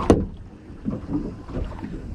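Low, steady rumble of wind and water around a small boat at sea, with one sharp knock right at the start.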